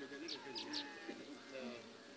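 Sheep and goats bleating faintly, with three short high bird chirps about half a second in.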